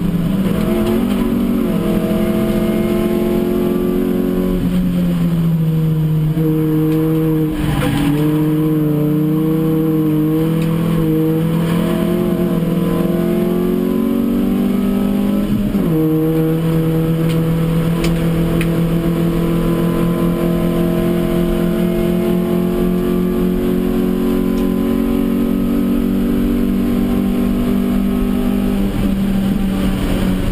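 A Hyundai Excel race car's four-cylinder engine, heard from inside the cabin, running hard under load. Its pitch climbs slowly over long stretches and dips about five, eight and sixteen seconds in and again near the end.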